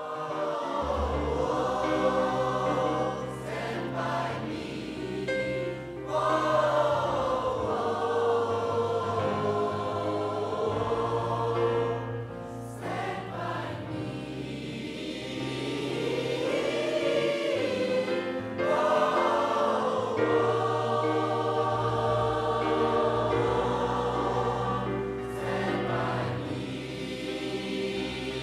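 Large mixed gospel choir singing slow, sustained chords, the voices gliding gently between held notes, with keyboard accompaniment underneath.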